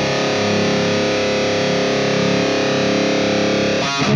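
Electric guitar with high-gain distortion, a Deviant Guitars Linchpin with a Heathen Fenrir pickup through a Neural DSP Quad Cortex amp profile into a Positive Grid Spark Cab, letting a chord ring out and sustain. Just before the end it breaks into fast, tight palm-muted chugging.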